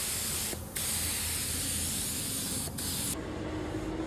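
Gravity-feed air spray gun hissing steadily as it sprays paint, with two brief breaks, about half a second in and near three seconds. The hiss cuts off suddenly about three seconds in, leaving a quieter low hum.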